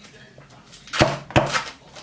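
Two sharp knocks on a hard surface, the second about half a second after the first, around the middle.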